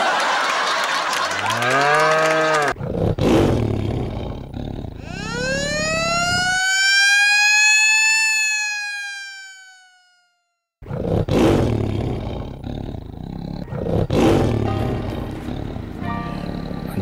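Intro sound effects. First a noisy blast with a swooping tone. Then a long tone rises and slowly falls away to silence at about ten seconds. After a short gap, music with a steady beat begins about eleven seconds in.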